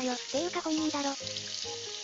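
Tteokbokki simmering in a lidded frying pan, a steady sizzling hiss from the sauce cooking under the glass lid. Music with wavering, then held, notes plays over it and is the loudest sound.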